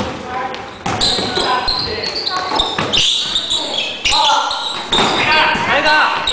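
A basketball bouncing on a wooden gym floor in a large hall, with several sharp thuds among players' calling voices.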